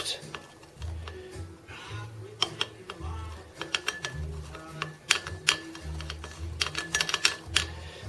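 A thermometer used as a stirring rod, clinking and scraping against the inside of a glass jar in quick, irregular ticks as it stirs honey into warm water to dissolve it.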